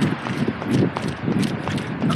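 Quick, regular footsteps of a person running on pavement, about three or four a second, with rustle from a handheld camera close by.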